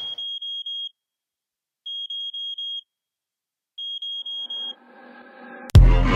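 A high, alarm-like electronic beep in an electronic dance track's breakdown: three groups of four quick beeps on one pitch, about two seconds apart, with silence between them. About five seconds in, a synth chord swells up, and the heavy kick-drum beat comes back in just before the end.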